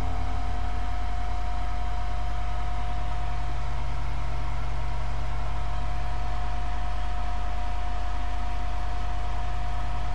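A steady low hum and hiss with a thin, steady high whine running through it; the last pulsing low notes of the music die away in the first second or so.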